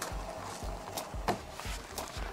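Portable fridge-freezer's compressor and cooling fan running as a low hum that pulses about three or four times a second, quiet and healthy by the owner's account. A short knock about a second and a quarter in.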